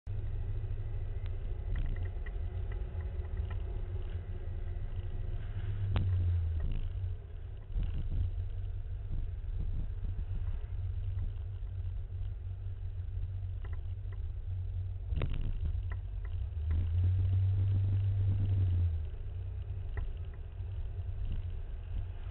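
Low, steady rumble of a moving car on the road, with a few sharp knocks. It swells louder for a moment about six seconds in and again for a couple of seconds later on.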